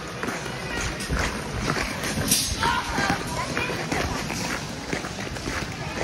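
Ice skate blades scraping and gliding over rink ice, with short scrapes stride after stride, and brief faint voices in the rink hall around the middle.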